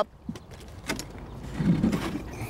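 A canoe being lifted up by one end: a couple of light knocks, then a short, low scrape near the end.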